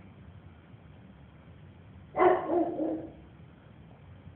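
A single loud animal call about halfway through, starting suddenly and lasting about a second before fading, over faint steady background noise.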